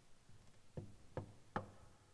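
Three light footsteps on a wooden floor, about 0.4 s apart, the last the loudest.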